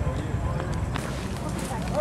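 Indistinct voices of people talking in the background, over a steady low rumble, with a few faint knocks about a second in.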